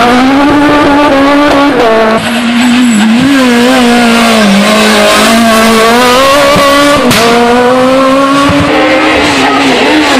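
Renault Clio rally cars' four-cylinder engines revving hard at high rpm through corners, the pitch wavering up and down as the throttle is lifted and reapplied. The sound cuts abruptly from one car to another about two seconds in and again about seven seconds in.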